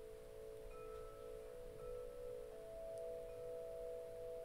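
Faint, soft meditation drone: a few close, sustained tones in a singing-bowl-like timbre, slightly wavering, with the highest note growing louder about halfway through.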